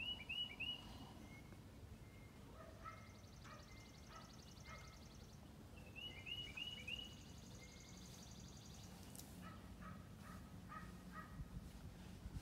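Faint birdsong from several birds. A quick run of chirps comes near the start and again about six seconds in, high rapid trills sound in between, and short repeated whistled notes come near the end.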